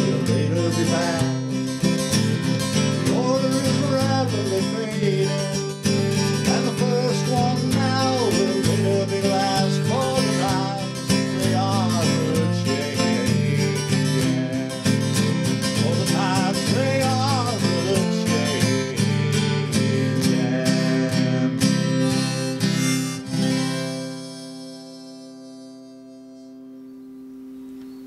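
Strummed acoustic guitar with a harmonica playing the melody over it: the instrumental outro of a folk song. Near the end the strumming stops and a final guitar chord rings out and fades.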